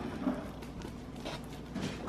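Faint, irregular light scrapes and taps of a knife cutting through a baked cheese pizza on its pan.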